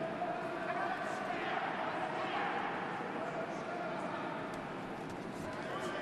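Boxing arena crowd noise: a steady hum of many voices with shouts, and scattered short knocks from the ring.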